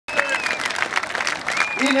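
A large crowd applauding, cutting in suddenly out of silence. Near the end a man starts speaking over it through a microphone and PA.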